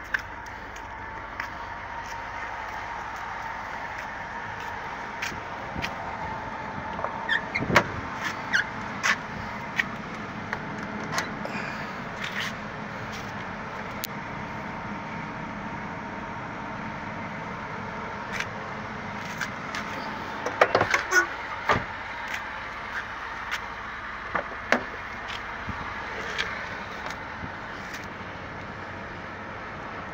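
Car door and handling noises: scattered clicks and knocks over a steady background, with a cluster of knocks about twenty seconds in, as someone gets into the car's cabin.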